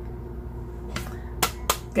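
Plastic paper punch being handled: a faint click near the middle, then two sharp plastic clicks about a third of a second apart shortly before the end.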